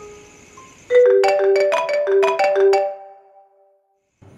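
Mobile phone ringtone: a quick melody of about ten marimba-like notes that starts about a second in and rings out and fades by three seconds.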